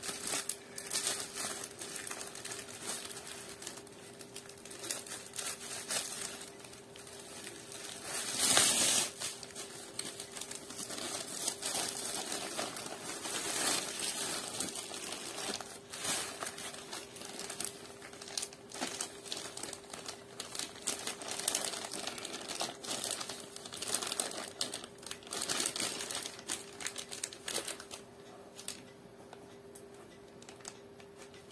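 Packaging being crinkled, rustled and torn open by hand: an irregular run of crackling handling noise, with one louder burst about eight and a half seconds in.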